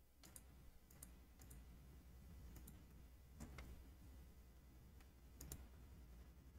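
Near silence with a few faint, irregularly spaced computer clicks.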